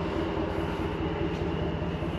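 A vehicle engine idling: a steady low rumble with a fast, even pulse.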